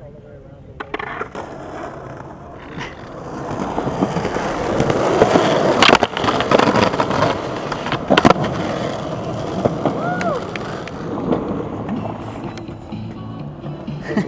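Skateboard wheels rolling over concrete, getting louder a few seconds in, with two sharp clacks about two seconds apart near the middle.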